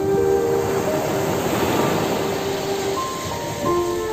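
Slow, calm music of long held notes over the rushing wash of ocean waves breaking on a sandy beach, the surf swelling in the middle.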